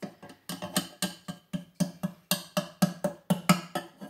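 A small spoon tapped repeatedly against the food processor's plastic feed tube, about four sharp taps a second, knocking ground cumin into the bowl.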